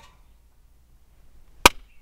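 One sharp hand clap about one and a half seconds in, made as a sync marker for lining up the video and the separately recorded audio. Faint low room tone surrounds it.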